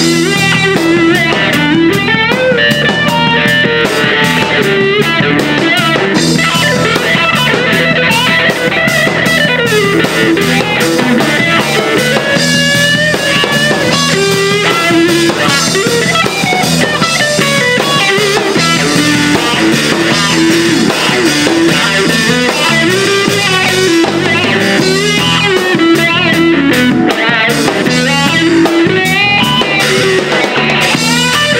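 Live funk-rock band playing an instrumental passage without vocals: electric guitar playing bending lead lines over electric bass and a drum kit groove.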